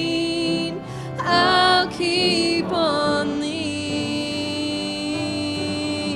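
A small group of mostly women's voices singing a worship song in long held notes. They are accompanied by piano, acoustic guitar, mandolin and fiddle.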